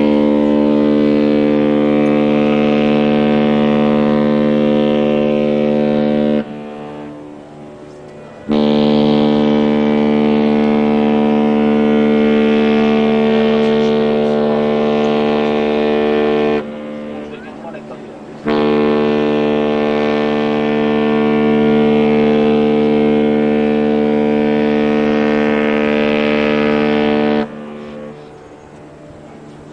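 Cruise ship Independence of the Seas sounding its whistle in three long blasts, each about eight seconds, with roughly two-second gaps between. The horn is loud and deep, with several tones together. Long blasts from a departing ship are the customary farewell signal when leaving port.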